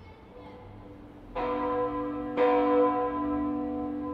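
The Kajetansglocke, a 2,384 kg church bell cast in 1967 by Karl Czudnochowsky and tuned to B (h°), starting to ring: two clapper strikes about a second apart, the second the louder, with the bell's tone humming on between and after them.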